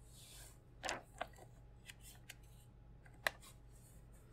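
Quiet room tone with a few faint, sharp clicks and ticks, the sharpest about three seconds in, and a brief soft rush about a second in.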